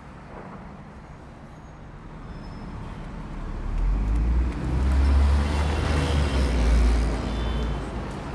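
City street traffic: a low hum that swells from about three seconds in into a deep engine rumble of a heavy vehicle passing close, loudest in the second half, then easing off.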